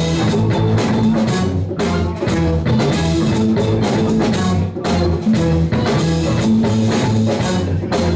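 A live rock band playing a steady instrumental passage on drum kit, electric guitar, bass guitar and keyboard.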